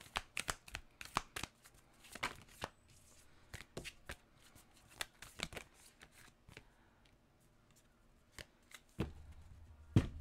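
Oracle cards handled and shuffled by hand: irregular snaps and flicks of card stock, dense at first and sparser in the middle. The cards are sticking together.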